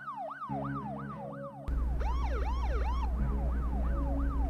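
Electronic vehicle siren cycling rapidly up and down in pitch, about three sweeps a second. Partway through, a second siren with slower sweeps overlaps it for about a second, and a steady low hum comes in.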